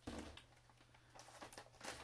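Faint handling of a wrapped parcel: a soft knock at the start, then a few light rustles and clicks.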